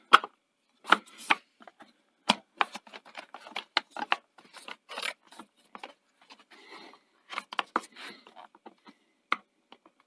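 Gloved hands handling and fitting the perforated sheet-metal cover of a Betamax power supply: irregular light clicks, taps and short scrapes of metal parts being worked into place.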